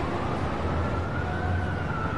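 A siren's single slow wail, rising in pitch for about a second and a half and then falling, over a steady low rumble.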